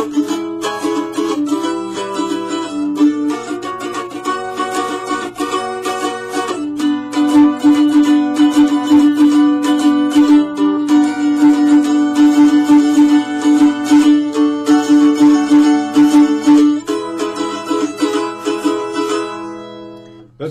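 Mandolin strummed in fast, steady chords that change every few seconds, starting on an A chord: the chord accompaniment of a song verse.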